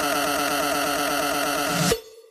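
Electronic dance music build-up from a DJ mix: a held synth chord pulsing rapidly with the drums stripped out, cutting off suddenly near the end.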